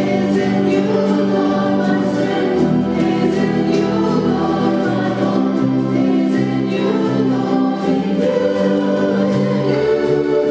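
Church choir singing a gospel worship song in long held notes, accompanied by keyboard, guitar and drums.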